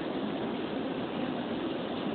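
Steady background noise: an even hiss with no distinct sounds in it.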